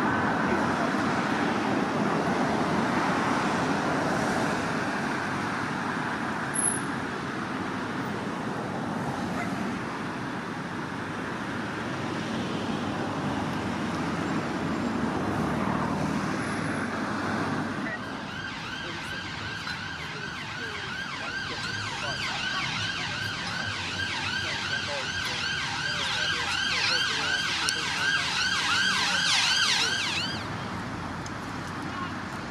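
Street traffic passing, then from about eighteen seconds in an emergency vehicle's siren in a fast, repeating up-and-down wail that grows louder toward the end.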